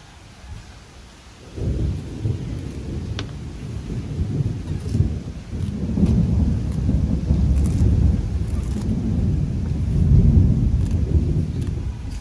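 A low, rumbling noise starts suddenly about a second and a half in and keeps rising and falling, loudest near the end.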